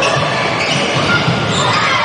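A basketball being dribbled up the court in a large, echoing gym, over a steady background of crowd voices.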